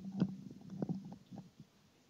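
Faint handling noise close to the microphone: a few soft knocks and rustles over a low hum, fading out in the second half.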